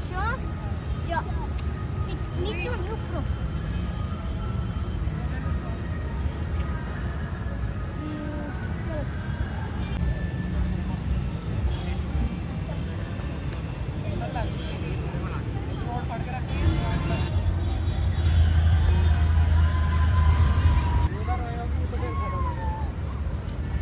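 Steady outdoor traffic rumble with scattered voices in the background. About sixteen seconds in, a louder rushing noise starts abruptly, lasts some four seconds and cuts off suddenly.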